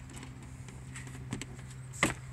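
Light knocks and clicks of a wooden table board being handled and set into place, a few scattered taps, over a steady low hum.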